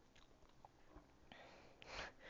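Near silence: room tone with a few faint mouth clicks and a soft breath near the end.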